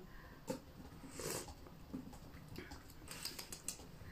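A short, quiet slurp of tea from a ceramic spoon about a second in, the taster drawing air in with the liquid, followed by a few faint light clicks near the end.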